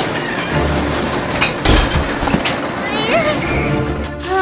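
Cartoon soundtrack of music and sound effects: a noisy rush with a heavy thud about one and a half seconds in, and a short vocal exclamation near the end.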